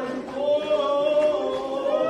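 Group of men singing a Kashmiri marsiya (devotional elegy) unaccompanied in unison, holding long drawn-out notes that swell about half a second in.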